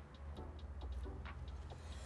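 Faint room tone: a steady low hum with a few soft, irregular ticks or clicks.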